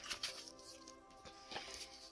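Quiet background music, with a couple of faint rustles and taps from a paper leaflet and card album case being handled, near the start and again about one and a half seconds in.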